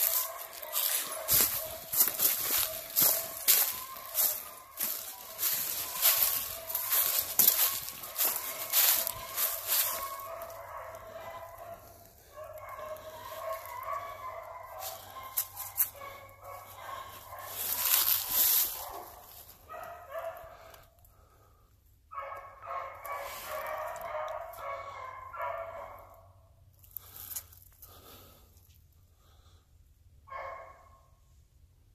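A pack of hounds baying while running a trail, their voices coming in repeated bursts that thin out and pause near the middle and again toward the end. Sharp crackles sound over the first ten seconds.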